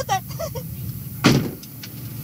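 A car door shutting once with a short, loud thud about a second in, over a steady low hum.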